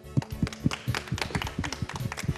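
A small group of people clapping in scattered, uneven claps, over quiet background music with steady held notes.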